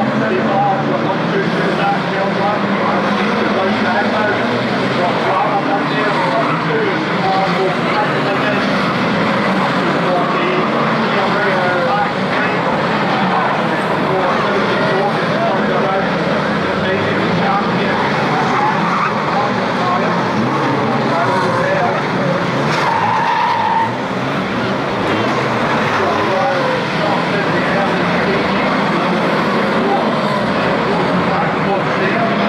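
A pack of saloon stock cars racing, many engines revving at once over skidding tyres, as one continuous mix of engine and tyre noise.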